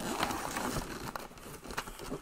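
Irregular crinkling and rustling of a bag or packaging being handled, with a few small clicks.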